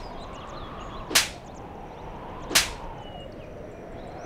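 Two sharp whip-crack whoosh sound effects, about a second and a half apart: the dramatic stings of a Hindi TV serial, laid over faint bird chirps.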